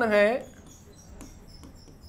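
A man's drawn-out spoken word, then faint scratching, ticks and small squeaks of a pen writing on an interactive display.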